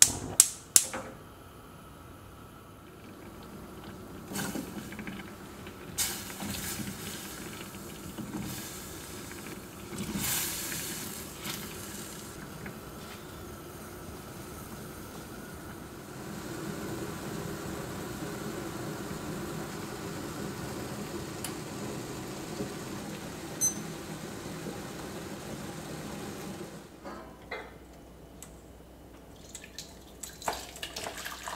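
A few sharp clicks at the start, then a stainless saucepan of soy-based glaze sauce boiling on a gas burner. The boiling grows steadier and louder about halfway through.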